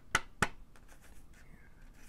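Two sharp paper snaps about a third of a second apart as a counterfeit ten-dollar bill is flexed and pulled taut between the hands.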